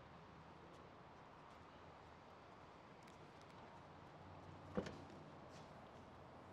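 Near silence: faint room tone, with one short knock a little under five seconds in.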